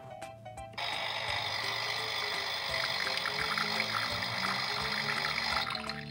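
Toy espresso machine playing its brewing sound effect, a steady hiss and trickle of coffee pouring into the cup. It starts abruptly about a second in and cuts off just before the end, over light background music.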